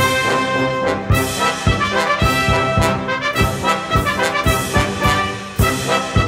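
Brass band playing an instrumental march passage with no singing, its sustained chords carried over a steady drum beat of about two beats a second.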